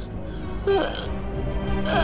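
Cartoon character's short startled vocal exclamation, a wordless yelp, about two-thirds of a second in, over low background music; another vocal sound begins near the end.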